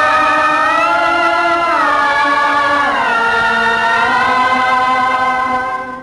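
Indian devotional song: one long held sung note that steps down in pitch twice and rises slightly, then fades out at the end.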